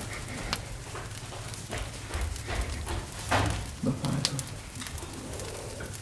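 A person gagging and heaving, retching as if about to vomit, in short irregular bursts, with scattered clicks and rustles of people moving.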